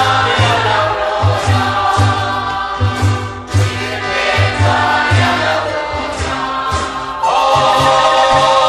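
Church choir singing a Spanish-language Mass hymn accompanied by marimba over a repeating low bass line; the music swells fuller and louder near the end.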